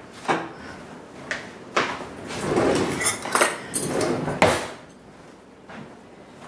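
A kitchen drawer slid open and shut with cutlery rattling inside as a fork is taken out: a few knocks and clicks around a longer sliding rattle in the middle.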